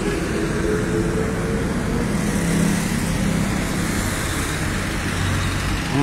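Street traffic: a motor vehicle passing on the road, a steady engine hum with tyre noise that swells around the middle.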